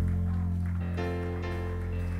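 Live worship band music: a slow, sustained low chord held steady on keyboard, with the band playing softly underneath.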